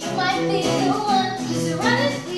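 A young woman singing over two acoustic guitars strumming and picking. Her voice comes in just after the start and slides upward near the end.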